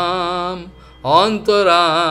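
A man chanting a Sanskrit verse in a sung, melodic style: a held note with wavering pitch, a short pause about half a second in, then a new phrase that rises and is held with the same waver.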